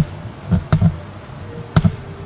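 Camera handling noise: a handful of dull thumps and knocks on the microphone as the handheld camera is swung round.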